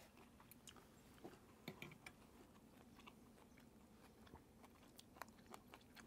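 Near silence with faint chewing of a bite of deep-fried steak and a few small clicks scattered through it.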